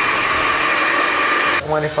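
Handheld hair dryer blowing a steady stream of air with a thin whine in it, drying hair. It cuts off suddenly about a second and a half in.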